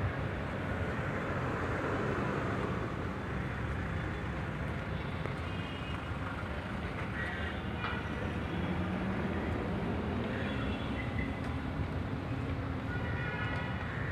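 Steady low outdoor rumble with no clear single source, with faint brief higher calls or voices now and then, most around the end.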